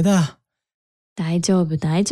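Speech only: short spoken lines of Japanese dialogue, broken by a pause of about a second.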